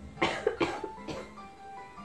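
A person coughing three times in quick succession, over soft background music.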